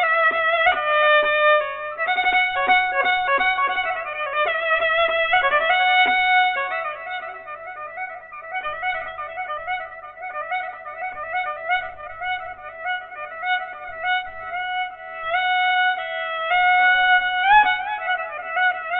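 Santur played in the Dashti mode of Persian classical music: a melodic line of ringing struck-string notes sustained by fast tremolo, louder for the first several seconds, softer through the middle and swelling again near the end.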